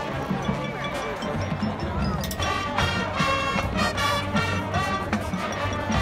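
Marching band playing: brass chords, short and punchy for the second half, over drums and percussion strikes.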